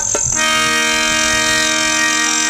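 A single musical note held steady in pitch for about two seconds, with a rich, reedy tone.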